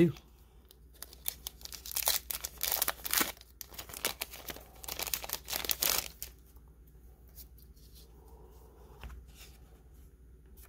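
Clear plastic wrapper on a stack of trading cards being torn open and crinkled: a run of sharp crackles from about a second in until about six seconds in. After that there is only soft handling of the card stack.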